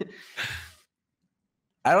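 A man's sighing breath out as his laughter fades, about half a second in.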